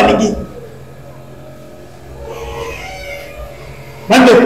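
A man's loud spoken exclamation cutting off about half a second in, followed by a low steady electrical hum under room background, with a faint brief sound in the middle.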